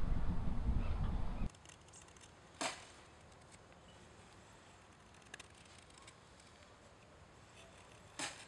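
A low steady rumble for about a second and a half, then a quiet stretch in which a knife blade makes one short, sharp stroke, shaving wood from a stick, with a faint tick a few seconds later.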